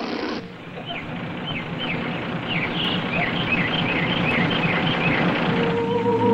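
Birds chirping: a run of about ten short, high, downward-sliding chirps over a steady background hiss.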